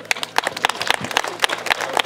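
Audience applauding: a dense, irregular patter of hand claps, some of them close and loud.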